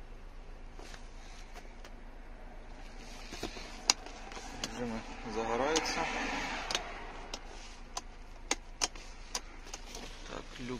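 Scattered sharp clicks of controls and trim being handled inside a car cabin, with a brief indistinct voice about five to seven seconds in.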